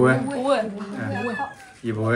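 Several people's voices chanting a repeated word, 'double', in drawn-out calls whose pitch slides up and down.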